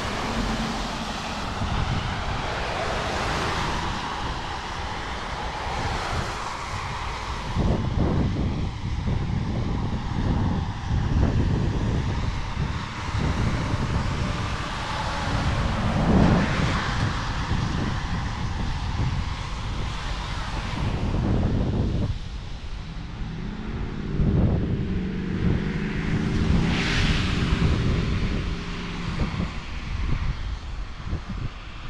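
Wind rumbling on the microphone over the noise of traffic on a wet road. An engine drone joins in for the last several seconds.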